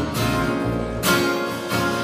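Acoustic guitar strumming chords over a bass guitar, with a new strum about a second in.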